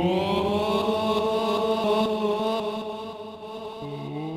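Ambient drone played on Soma Lyra-8, Pipe and Cosmos synthesizers: layered sustained tones that glide upward together in the first second, then thin out and dip in level about three seconds in, with a new low tone entering just before the end.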